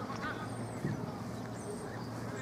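Open-air ambience of an amateur football match: faint distant shouts from players over a steady low rumble, with one dull thud a little under a second in.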